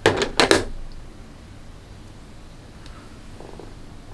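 Three or four short, sharp clicks and taps in the first second as the eyeshadow palette is handled and a fingertip dabs into a pressed shade, then quiet room tone.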